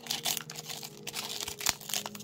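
Foil wrapper of a Pokémon booster pack crinkling and tearing in irregular crackles as it is pried open by hand; the pack is glued shut, so it resists being opened.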